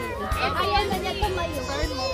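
Several young children talking and calling out at once, their voices overlapping, with music playing underneath.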